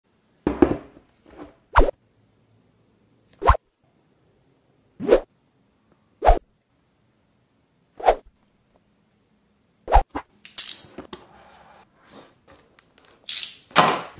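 Seven short separate knocks, one every second or two with silence between, then from about ten seconds in a run of scraping and rustling as a cardboard smartphone retail box is handled.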